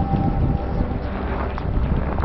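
Wind buffeting the camera's microphone: a steady rushing noise with a heavy low rumble.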